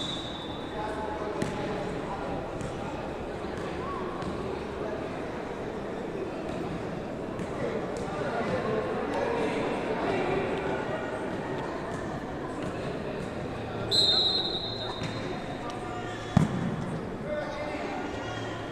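Indistinct voices of players and spectators echoing through a large indoor sports hall. A short, high, steady whistle sounds at the start and again about fourteen seconds in, and near the end comes one sharp slap of the ecuavoley ball being struck by hand.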